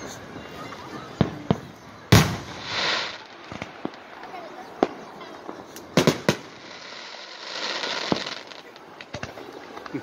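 Aerial fireworks going off: a string of sharp bangs from shells bursting, the loudest about two seconds in and a quick cluster of three around six seconds in, with two longer noisy stretches between them.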